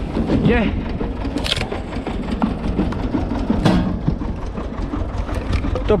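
Tractor-driven screw log splitter running, its threaded cone boring into a log and splitting it, over the steady run of the tractor engine driving it. There are two sharp cracks, about one and a half and three and a half seconds in.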